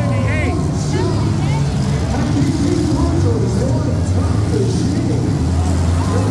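Engines of several demolition derby cars running together in a loud, steady low din, with crowd voices and shouts over them.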